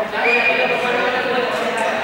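Many young players' voices shouting and chattering together in a large, echoing sports hall, with one high, drawn-out cry near the start.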